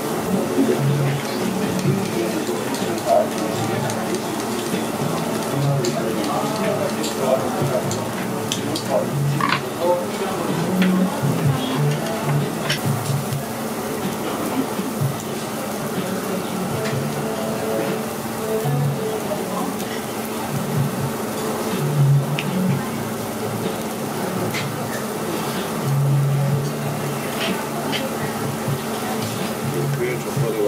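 Pork sizzling on a tabletop barbecue grill, with scattered clicks of metal tongs, under background chatter and music.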